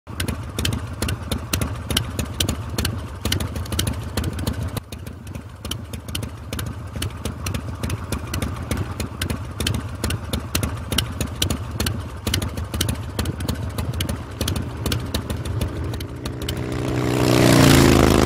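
Cruiser motorcycle's V-twin engine idling with an uneven beat of sharp exhaust pulses over a low rumble, swelling louder near the end.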